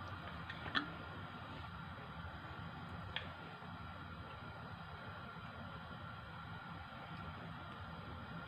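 Faint steady background hum with two soft clicks, about a second in and about three seconds in, from a wooden spoon knocking against a nonstick pan while butter is pushed around it.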